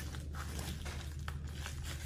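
Quiet scraping and tearing of thick packing tape being cut through on a shipping package, with a few small clicks.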